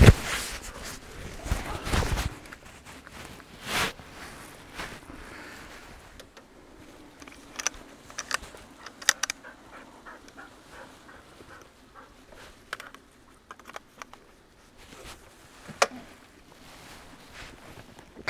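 Rustling of outdoor clothing and kit being handled as a hood, gloves and a chest harness are put on, with a knock at the start and scattered small clicks later.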